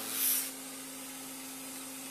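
A short breathy hiss near the start, then a steady low hum of the truck cab.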